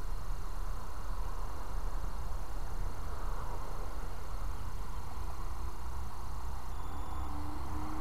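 Steady low rumble with a faint hiss: outdoor background noise on a small action-camera microphone, with no distinct event. A faint steady hum comes in during the second half.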